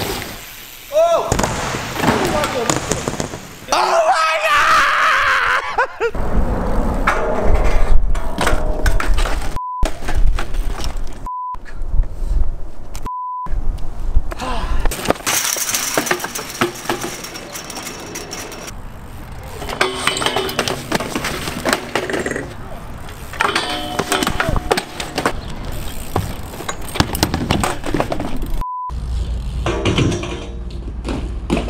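BMX bikes and riders crashing onto ramps and pavement, with sharp impacts and people shouting and yelling in reaction. A short steady beep cuts in four times, three of them close together a third of the way in and one near the end.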